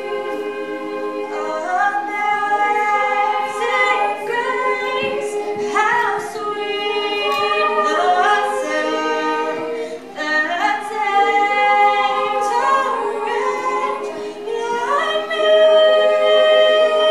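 Treble choir of upper voices singing a cappella, holding sustained chords that move from note to note.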